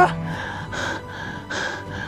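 A young man breathing hard in repeated distressed gasps, a little more than one breath a second, over background music.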